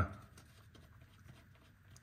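Near silence with a few faint, scattered small clicks, from fingers turning the drain plug in the transmission case by hand.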